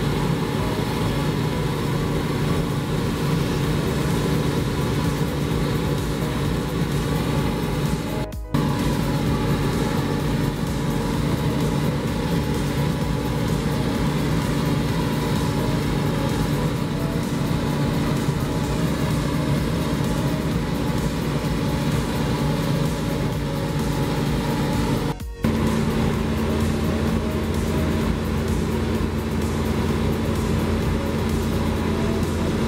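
New Holland CR 9.90 combine harvester running steadily while its unloading auger pours rice into a trailer, a continuous mechanical drone. The sound drops out briefly twice, and after the second dropout a new steady hum comes in.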